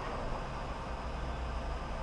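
Gasoline pump nozzle filling a Yamaha Lander 250's fuel tank: a steady rush of flowing fuel over a low hum, with the fuel level nearing the filler strainer at the top of the tank.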